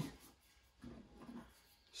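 Faint, brief rubbing and rustling as steel pistol magazines are drawn out of a foam case insert, about a second in; otherwise near silence.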